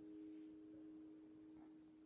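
The last notes of a guitar's final chord ringing out, two steady pitches slowly dying away.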